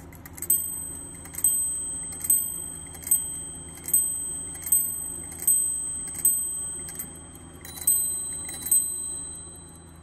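Pierre Millot French carriage clock movement striking on its nested bells: eight strokes on one bell about 0.8 s apart, each ringing on and fading. After a short pause, two more strokes follow, with a second, differently pitched bell joining in.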